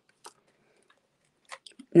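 A few faint, scattered clicks from a tape-runner adhesive dispenser being pressed onto card stock, with a short cluster of ticks near the end.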